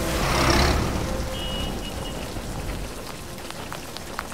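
Steady rain falling on a city street. The rain swells just after the start, then eases over the next couple of seconds.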